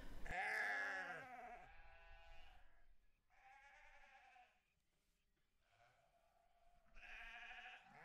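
Sheep bleating several times, with quiet gaps between calls. The loudest call is right at the start, fainter ones follow, and another comes near the end.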